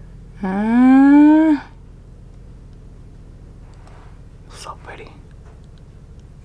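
A woman's wordless voiced "mmm" about a second long, rising in pitch, made while applying lipstick. A few faint short clicks follow near the end.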